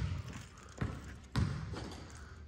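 A basketball bounced twice on a hardwood gym floor, two separate thuds about half a second apart, each with a short echo off the hall.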